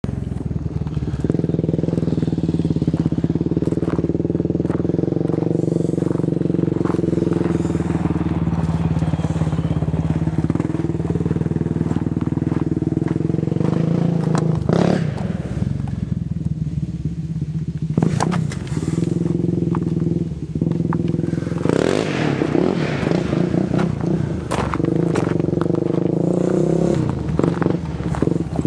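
Honda 400EX ATV's single-cylinder four-stroke engine idling steadily, with a few sharp knocks along the way.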